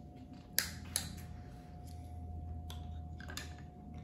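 Thin shell of a small cooked lobster's claw crackling and snapping as it is cracked and picked apart by hand on a cutting board: two sharp snaps within the first second, then a few fainter clicks.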